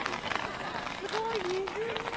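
Niagara falls firework set burning, with a steady spatter of crackles as its curtain of sparks falls. Spectators talk nearby, and one voice holds a drawn-out, wavering sound in the second half.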